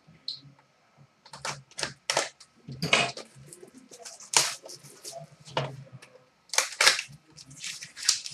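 Irregular sharp clicks and short scraping rasps of a sealed trading-card pack being slit open with a small knife and handled, about a dozen in all, with quiet gaps between.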